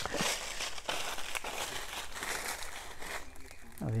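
Fresh green leaves crinkling and rustling in the hands as they are folded and pressed into a packet, with many small irregular crackles.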